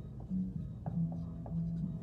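Dry-erase marker writing on a whiteboard, with a few short squeaking strokes.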